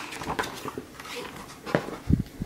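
A picture book's paper page being turned by hand: a few short rustles and light flaps of paper.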